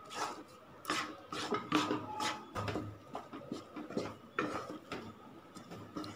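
A wooden spatula scraping and stirring a thick, sticky mango burfi mixture around a nonstick pan, in irregular strokes about two to three a second.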